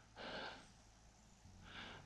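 A man's breathing close to the microphone: two faint breaths, one shortly after the start and one near the end, with near silence between.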